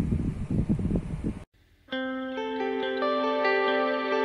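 Calm instrumental background music with sustained, echoing plucked notes begins about two seconds in, after an abrupt cut. Before the cut there is about a second and a half of loud, irregular low rumbling noise.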